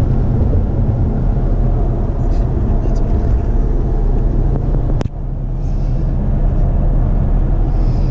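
Ford Mustang GT with its 5-litre V8, heard from inside the cabin while cruising at motorway speed: a steady low drone of engine and road noise. A single sharp click comes about five seconds in.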